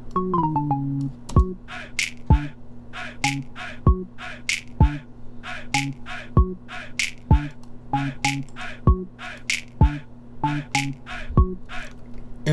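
A few quick synth bass notes sound as notes are dragged in the piano roll. Then the beat plays back: kick drums in a repeating pattern of two hits close together and a longer gap, sharp clap and hi-hat hits between them, over a synth bass line from Serum.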